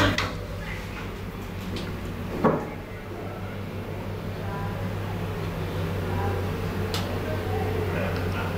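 Inside a Thyssen hydraulic elevator car: a steady low hum, with one sharp thump about two and a half seconds in and a light click near the end.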